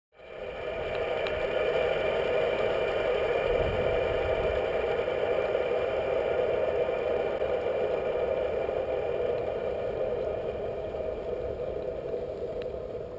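Longboard wheels rolling over asphalt, picked up by a camera mounted on the board itself: a steady rolling rumble with a faint rattle, fading in over the first second.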